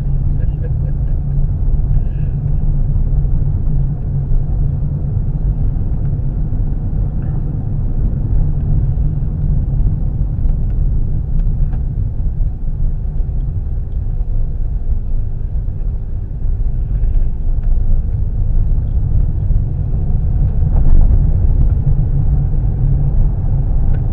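Road noise inside a moving car's cabin: a steady low rumble from the tyres on a dirt road and the engine.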